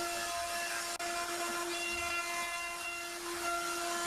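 Makita trim router on a Shapeoko CNC, fitted with a 1/8-inch end mill, running with a steady whine and a hiss as it cuts the profile of a pine plaque.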